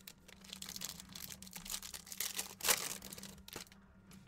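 Foil trading-card pack wrapper crinkling and tearing as it is opened by hand: a run of crackles, the loudest about two-thirds of the way through.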